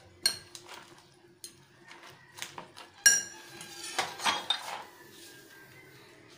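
A metal fork clinking and scraping against a glass bowl while tossing sliced hummingbird flowers. The clinks are scattered, and the loudest comes about three seconds in with a short glassy ring.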